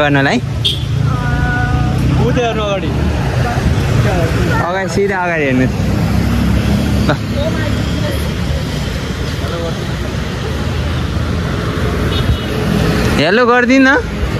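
Road traffic passing close by: a steady low rumble of vehicle engines and tyres, with a short steady tone about a second in.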